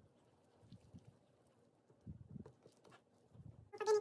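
Wire whisk beating pancake batter in a ceramic bowl, knocking and scraping against the bowl in irregular strokes. A voice starts near the end.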